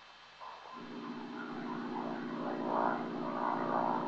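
A single-engine propeller plane's engine droning steadily in flight. It fades in about half a second in and grows louder.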